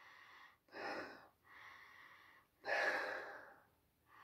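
A man sniffing a glass of cider twice through his nose to take in its aroma, the second sniff longer and louder.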